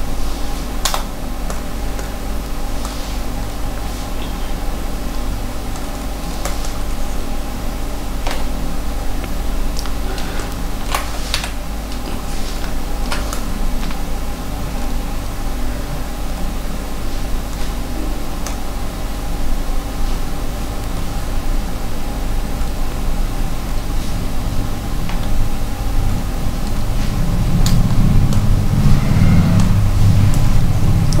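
Steady low electrical hum and fan-like drone from the recording setup, with sharp clicks every few seconds. The hum grows louder near the end.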